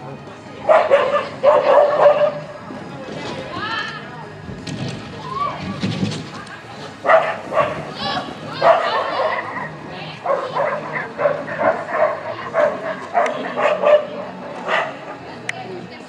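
Border collie barking in short repeated bursts while running an agility course: a cluster of barks about a second in, then a long run of barks from about seven seconds to near the end.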